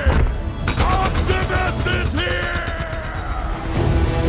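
Film soundtrack: music with a robot-transformation sound effect. A falling whoosh at the start is followed, from about a second in until near the end, by a rapid run of metallic mechanical clicks.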